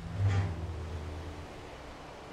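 A deep, low boom that starts suddenly and hums on, fading away over about a second and a half, followed by a soft steady hiss.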